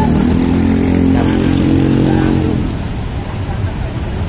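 Small motorcycle engine running as it rides past close by, fading out after about two and a half seconds.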